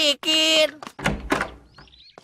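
A called word ends, then about a second in a heavy wooden front door thuds open, with a low rumble that fades over about half a second.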